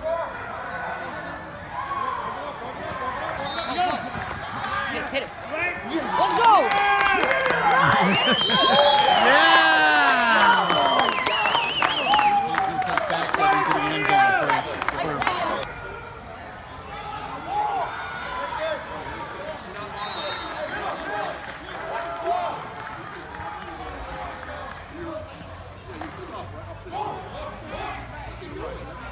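A sideline crowd of spectators and players shouting and cheering over one another, with some clapping. It swells to its loudest from about six seconds in, then drops off sharply around fifteen seconds to a lower murmur of voices.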